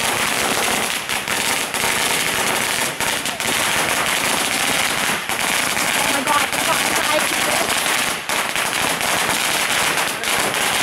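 Firecrackers going off in a dense, continuous rapid crackle of bangs.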